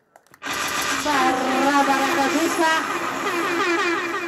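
A brief near-silent break, then from about half a second in a person's voice with drawn-out, wavering pitch glides.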